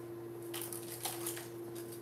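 Small clicks and light rattling of a hard plastic fishing plug and its hooks being handled over open plastic tackle boxes, a quick run of clicks starting about half a second in.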